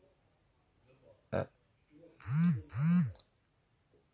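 A man's voice: a short 'hein?' about a second in, then two short hummed 'mm' sounds, each rising and falling in pitch, with near silence between them.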